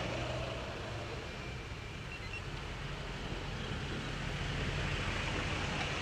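Car engines idling in a stopped traffic jam: a steady low hum under a wash of road noise as a bicycle passes close by the queued cars.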